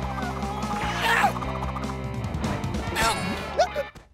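Cartoon sound track: a steady low drone with a flute line over it and several sliding, voice-like cartoon cries, about a second in and again near the end. It all cuts off suddenly just before the end.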